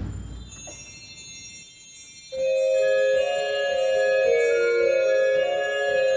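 A zimbelstern's small bells tinkling continuously, joined a little over two seconds in by sustained chords on a Fisk pipe organ. A brief low thump sounds at the very start.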